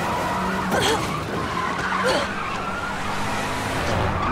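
Car noise with two brief squeals, about a second in and again about two seconds in.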